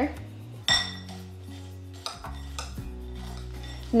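A metal fork clinking against a glass mixing bowl: one sharp, ringing clink about a second in, then lighter clinks and scraping as dry stuffing mix and melted butter are stirred together.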